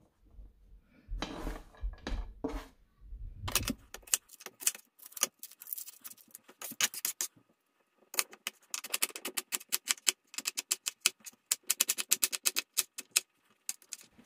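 Chef's knife slicing a red onion on a plastic cutting board, a rapid run of blade taps on the board that is densest in the second half. It follows a few low handling thumps near the start.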